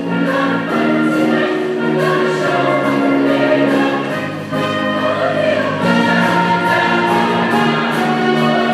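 High-school show choir singing held chords in harmony, backed by a live pit band.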